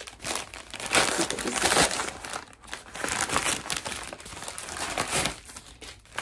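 A brown paper mailer being torn open and handled, with irregular crinkling and tearing of paper.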